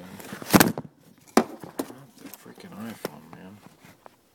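Hard plastic GM PCM wiring connector being handled: a loud rubbing, knocking noise about half a second in, then three sharp plastic clicks spread over the next two seconds.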